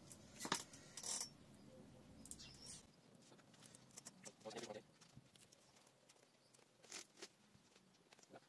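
Two sharp clicks of a small hand trowel being handled and set down, about half a second apart, then faint scraping and rustling of potting soil as fingers press it around a freshly potted succulent in a plastic pot.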